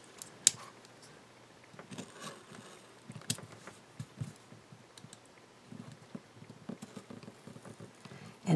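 Craft knife blade cutting and scraping along sticky patterned paper on a photo block. It makes faint scratches with scattered small clicks and taps, sharpest about half a second in and again a little past three seconds.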